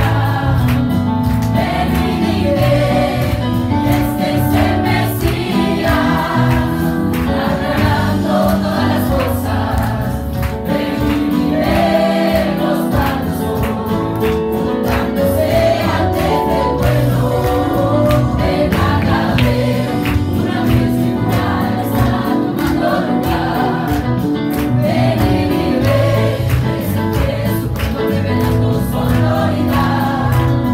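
Live Christian worship song sung by a small group of singers, mostly women, into microphones through a PA. An electronic keyboard and an electric bass play underneath, with steady low bass notes.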